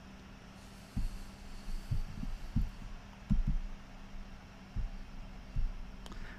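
Irregular soft, dull thumps, about eight of them and all deep in pitch, over a steady low electrical hum.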